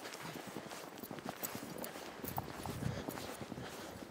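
Footsteps crunching in deep fresh snow, soft irregular crunches with a louder low thump about three seconds in.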